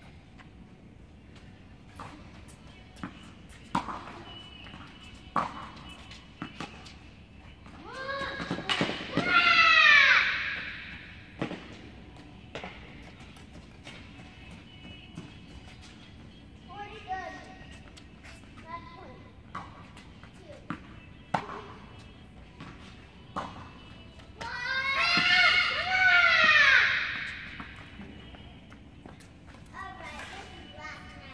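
Tennis balls struck by racquets and bouncing on an indoor hard court: sharp knocks every second or few, echoing in the large hall. Twice a child's voice rises into a loud, drawn-out cry that climbs and falls in pitch, lasting two to three seconds each time.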